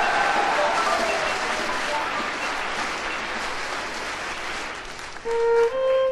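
Audience applause on a live jazz recording, slowly dying away. Near the end a single instrument comes in with a long held note, then a second held note a little higher.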